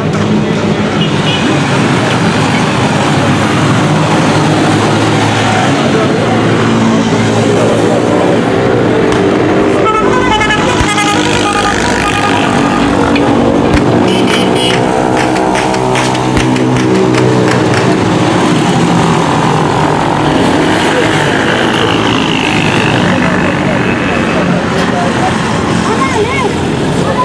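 Loud, chaotic street noise: many voices shouting over one another, with vehicle horns sounding and a rapid run of sharp cracks around the middle.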